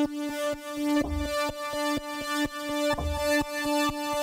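Korg opsix FM synthesizer playing its 'Feel The Pump' factory preset: a held chord whose volume pumps in a steady rhythm, with a deep low thump twice.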